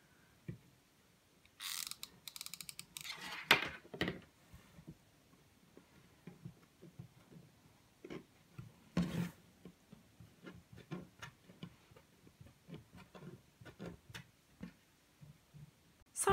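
Faint handling sounds of a hot glue gun and jute rope on a tabletop: scattered clicks, rustles and short scrapes, with a quick run of rapid clicks about two seconds in and a louder rustle near the middle.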